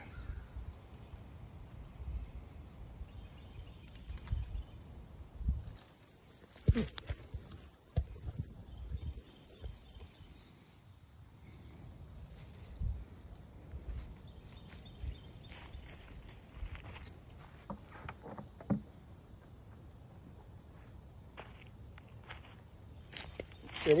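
Faint outdoor background with scattered short clicks and knocks, the sharpest about seven and eight seconds in, and a few low rumbles in the first half.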